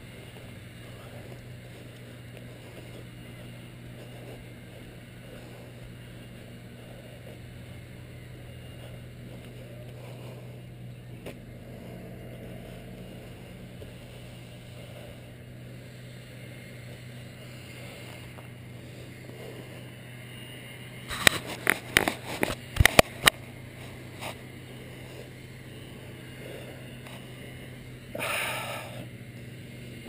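Faint, steady low outdoor background hum. A quick series of sharp clicks comes about two-thirds of the way in, and a brief scratchy burst near the end.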